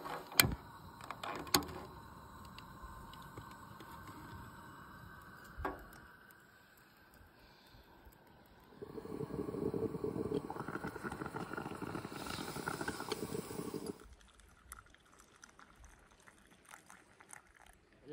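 Sharp metal clicks as an aluminium moka pot is handled on a camp stove's wire grate, then a faint steady hiss of the gas burner. About nine seconds in, a louder rough hiss lasts about five seconds as the moka pot boils and steams. A few light clicks follow.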